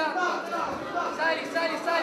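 Voices talking and calling out around the cage, overlapping crowd chatter in a large hall.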